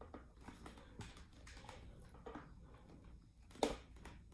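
Faint small plastic clicks as the visor-height adjuster at the visor pivot of a Scorpion Exo-510 Air motorcycle helmet is worked with a flat tool. One sharper click comes about three and a half seconds in.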